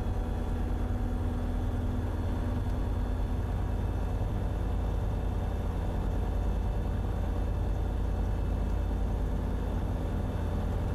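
Sling light aircraft's piston engine and propeller running steadily at low ground power, heard from inside the cockpit as a constant low drone.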